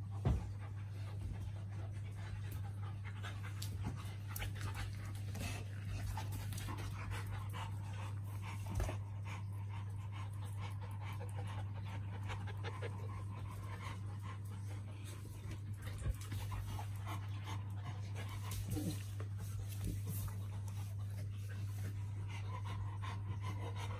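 Dogs panting, with scattered light clicks and scuffles and a sharp knock just after the start, over a steady low hum.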